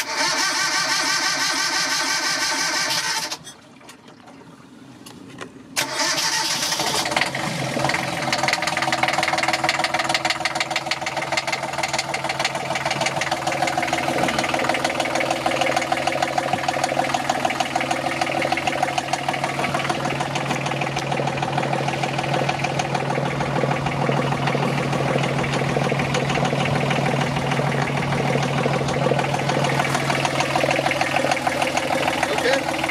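Volvo Penta marine diesel cold start: a first spell of about three seconds at the starter, a pause, then cranking again from about six seconds in. The engine catches within about a second and settles into a steady idle.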